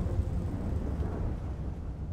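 Low rumbling sound effect from an animated channel-logo intro, fading steadily away as the intro music ends.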